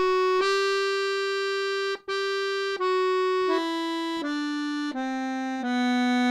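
Sonola piano accordion playing the G major scale one note at a time: the top G is held, sounded again after a brief break about two seconds in, then the scale steps down note by note, a little under a second per note.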